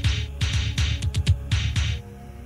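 Dark electro music off a cassette demo: a fast run of electronic drum hits, each a low thump under a bright crack, quickening briefly in the middle. The hits stop suddenly at the end, leaving a steady low synth drone.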